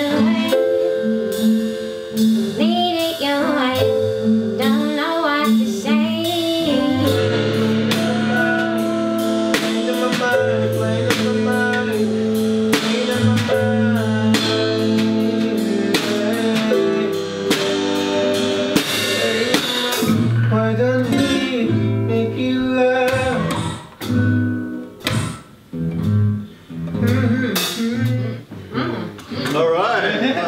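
Live band jam: electric guitar, drum kit and keyboard playing a slow, emotive jazz-style tune with a voice singing over it. About twenty seconds in, the full band gives way to sparser, stop-start playing.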